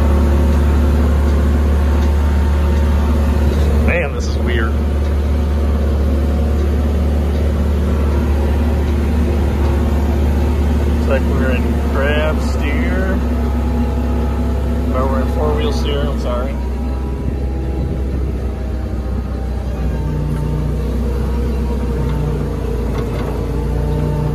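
Small crane's engine running at a steady idle with a deep hum, heard from the operator's seat, just after being started.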